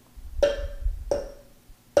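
An upturned porcelain teacup clinking against its saucer three times as it is turned by hand, each clink ringing briefly, with a low rumble of handling between the first two.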